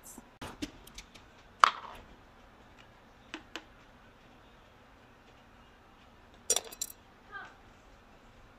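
Kitchenware handled on a countertop: a few separate knocks and clicks, the loudest about a second and a half in, then a quick run of metal and glass clinks near the end as a stainless measuring cup is set into a glass measuring jug.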